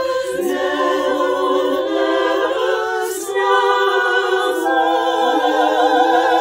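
Women's choir singing a cappella in long held notes with vibrato, the voices recorded separately and mixed into one virtual choir.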